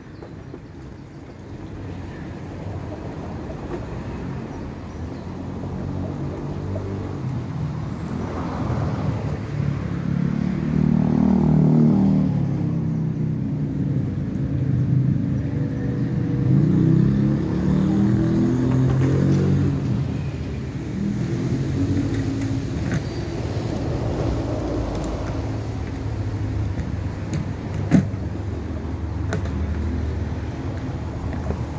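A tram passing close by. Its motor drone glides up and down in pitch as it builds over several seconds, stays loudest for about ten seconds, then eases off. One sharp knock near the end.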